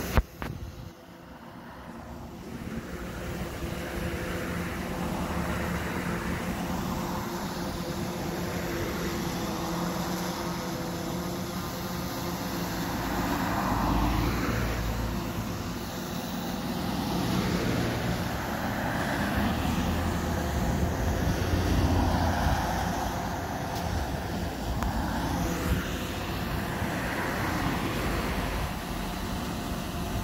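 Road traffic: cars passing one after another, swelling and fading every few seconds over a steady low hum. A sharp click right at the start.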